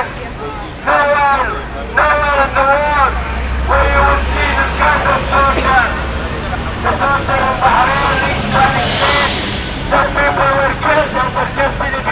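A man's voice shouted through a handheld megaphone in short phrases with pauses, sounding thin and narrow. Low traffic rumble lies underneath, and about nine seconds in there is a short, loud hiss.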